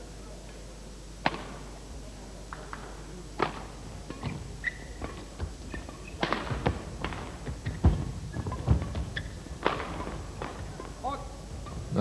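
Sharp racket strikes on a badminton shuttlecock during a rally: a couple of hits in the first few seconds, then a quick, irregular run of hits mixed with thuds of players' footsteps on the court from about four seconds in.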